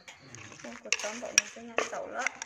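Wooden pestle and plastic spoon knocking and scraping in a wooden mortar, with a few sharp knocks, the clearest about one and a half seconds in.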